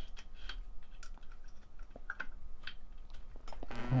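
Light, irregular clicks and taps as a clutch cable and its metal fittings are handled and threaded through the clutch arm of a two-stroke bicycle engine kit.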